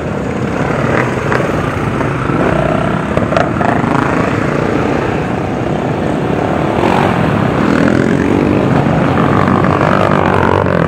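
Many dirt bike engines running together as a column of riders passes close by, a continuous dense drone. Individual bikes rev up and down, more so in the last few seconds.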